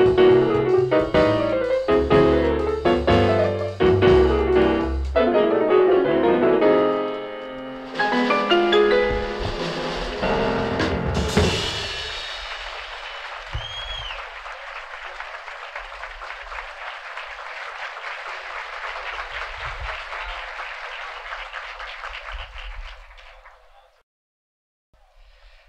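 Live piano-led jazz combo with bass and drums playing the last bars of a tune, ending about 11 seconds in. Audience applause follows and fades out near the end.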